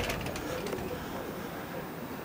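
A bird calling faintly over a low, steady background.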